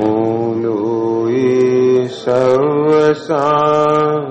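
A man chanting a devotional mantra in long, drawn-out sung notes, pausing briefly twice for breath.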